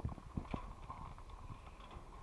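Light-steel greenhouse roof frame knocking and ticking as a barefoot worker climbs across it: a sharp knock at the start, another about half a second in, then lighter taps.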